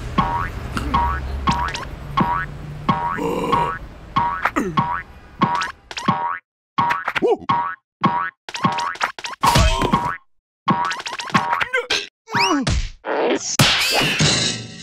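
Cartoon spring 'boing' sound effects, repeated about twice a second at first and then more irregularly, as a character bounces on a coil spring, over background music.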